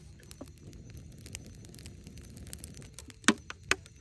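Small campfire of twigs and dry leaves crackling, with scattered small snaps and two louder pops near the end.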